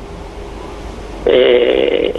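A man's voice over a telephone line: a stretch of quiet line noise with a faint steady hum, then about a second and a quarter in a long held hesitation sound on one pitch, thin as phone audio is.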